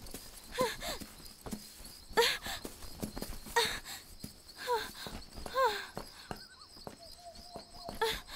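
A frightened girl's short whimpering gasps, about five of them, each bending up and down in pitch, with footsteps and rustling as she pushes through brush onto a dirt road.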